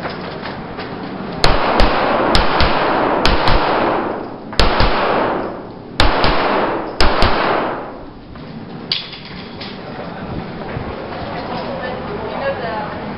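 Pistol shots fired in a string of about eleven, in irregular groups of one to three, between about a second and a half and nine seconds in. Each shot rings on in a long echo off the brick walls of an enclosed cellar range.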